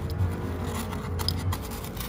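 Rustling and light scraping of a hand pushing into a motorcycle helmet's fabric-covered padded liner, as a series of short scratchy ticks over a steady low hum.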